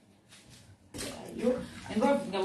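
Water splashing and trickling in a plastic bowl as green bananas are handled in it, starting suddenly about a second in, then a woman's voice near the end.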